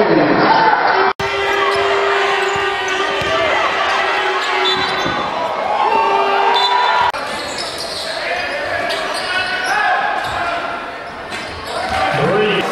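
Live basketball game audio in an arena, cut between clips: a ball bouncing on the court, with voices and crowd in a large hall. A steady held tone sounds twice, for several seconds and then about a second.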